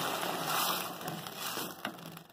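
Hot water hissing and bubbling as it meets toasted rice in a hot pan, dying away steadily while a silicone spatula stirs, with one light knock near the end.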